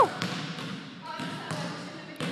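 A few faint, sharp thuds of a basketball bouncing on a hardwood gym floor, with a faint distant voice partway through.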